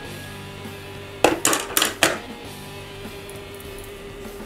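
An alarm playing a little tune softly in the background, held notes under the whole stretch. About a second in, a quick clatter of small hard objects: four sharp clicks within about a second.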